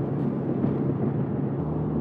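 Steady road and engine rumble heard inside the cabin of a moving car.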